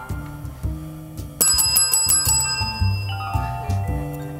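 A domed metal service bell on a desk is struck rapidly about seven times in a second, about a second and a half in, and its ringing fades out afterwards. Background music with a bass line plays throughout.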